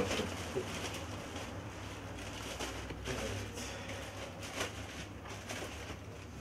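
Quiet shop room tone: a steady low hum with a few faint clicks and rustles of handling, one slightly louder click about four and a half seconds in.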